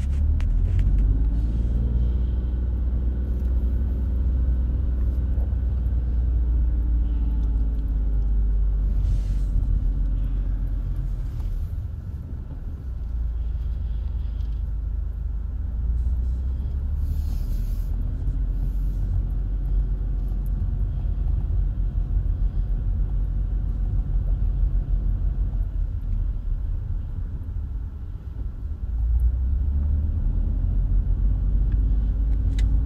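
Car engine running with a steady low road rumble as the car drives slowly. The engine note rises as it accelerates, about two seconds in and again about twenty seconds in.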